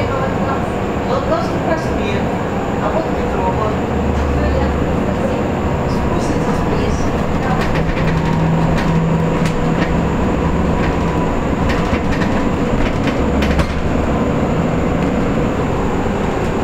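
Cabin noise of a KAMAZ-6282 electric bus on the move: steady road and tyre rumble, with a faint steady whine from the electric drive and a few light rattles.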